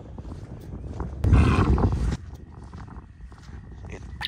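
Wind rumbling on the microphone throughout, with a louder gust a little over a second in that lasts under a second.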